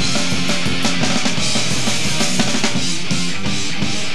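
Live rock band playing loud without vocals: electric guitars, bass and a drum kit with steady drum hits and cymbals.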